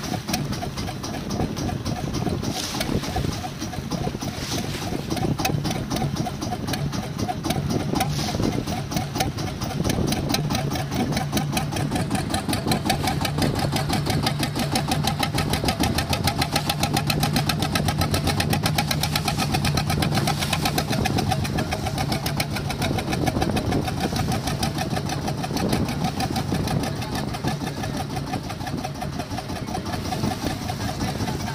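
Small wooden fishing boat's engine running steadily, with a rapid even pulse that gets a little louder in the middle.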